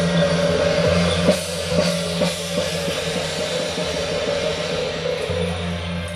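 Temple-procession percussion playing loudly: drum strikes under continuous clashing of large hand cymbals, with a sustained ringing tone beneath.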